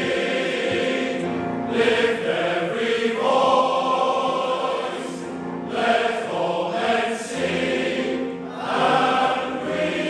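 Large male voice choir singing in a church, holding sustained chords in phrases with brief breaks every few seconds.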